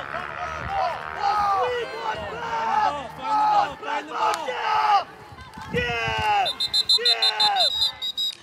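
Spectators and players yelling over one another, then a referee's whistle trilling in rapid pulses for about a second and a half near the end, blown to stop play for a false start.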